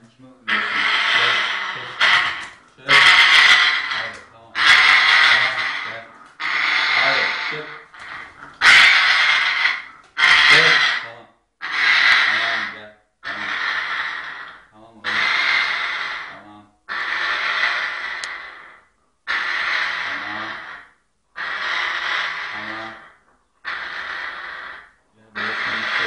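African grey parrot giving a long raspy, hiss-like call over and over, about one every two seconds, each lasting around a second and a half, the later ones a little quieter.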